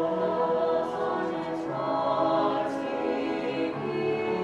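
Mixed school choir singing held chords in several parts, the harmony shifting every second or so, with a few crisp 's' sounds cutting through.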